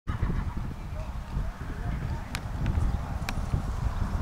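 A pony's hoofbeats on the arena surface under a low, uneven rumble, with two sharp clicks in the second half.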